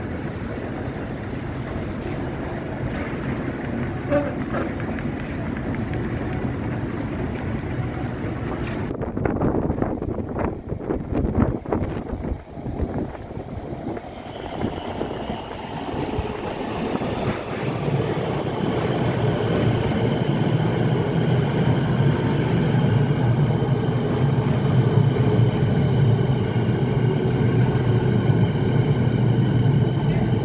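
Steady hum of station ambience, then a Melbourne suburban electric train pulling into an underground platform: from about eighteen seconds a loud, steady low rumble with several high whining tones over it as the train runs alongside, echoing in the tunnel.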